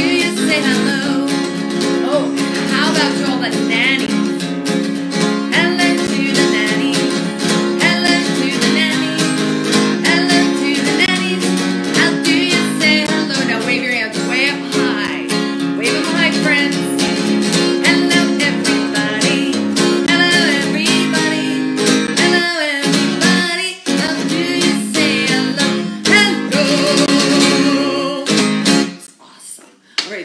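A woman singing with her own strummed acoustic guitar. The strumming and singing stop about a second before the end.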